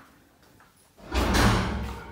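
A panelled interior door being pushed open, a single sudden thump with a deep rumble about a second in that fades over most of a second.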